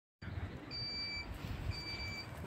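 An electronic beeper sounding twice, about a second apart, each beep a high steady tone lasting about half a second, over a low rumble.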